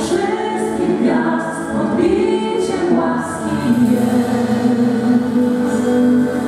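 A worship vocal team of men and women singing together in harmony into microphones, amplified through a PA, holding long notes.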